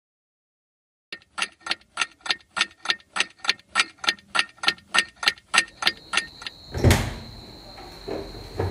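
Clock ticking sound effect, about four even ticks a second, starting after a second of silence and stopping about six and a half seconds in. It is followed by a loud, heavy thump near the end, over a steady high whine.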